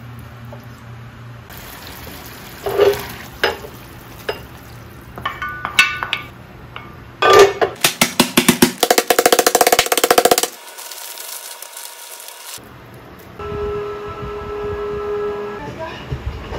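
A wooden spoon stirring and clinking against a pan. This is followed by a fast, regular run of strikes for about three seconds as a small mallet pounds food in a plastic bag, and then a steady hum near the end.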